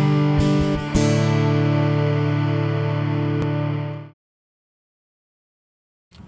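Guitar chords strummed a few times, then a final chord left ringing for about three seconds before it cuts off suddenly into silence.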